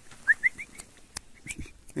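A person's short, rising lip squeaks calling a dog: three quick chirps, then two more about a second later, with a sharp click between them.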